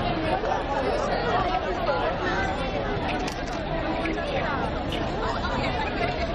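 Crowd of spectators chattering: many overlapping voices at once, with no single speaker standing out.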